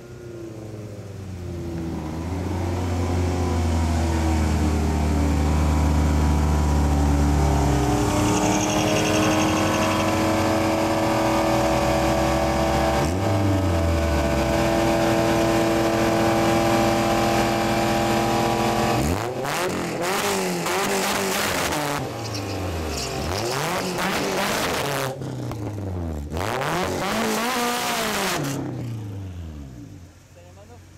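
Ford Mustang LX Fox-body doing a burnout: the engine climbs to high revs over the first few seconds and holds there, with the rear tires spinning and smoking on the pavement. About two-thirds of the way through, the steady run gives way to a series of rising-and-falling revs that end just before the close.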